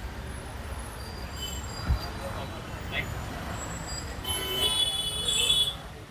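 Street noise around a car: a steady low rumble of an idling engine and traffic, with a short thump about two seconds in. Near the end a shrill, horn-like tone sounds for about a second and a half, the loudest sound here.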